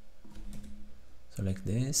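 A few computer keyboard keystrokes, with a man's voice starting to speak near the end.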